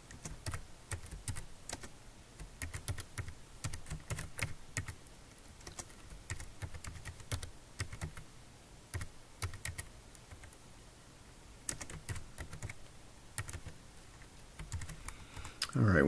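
Typing on a computer keyboard: irregular runs of key clicks, word by word, with a pause of about a second roughly two-thirds of the way through.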